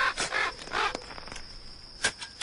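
Three short animal calls like barks in the first second, over a steady high-pitched whine: a sound-effect opening on the backing track.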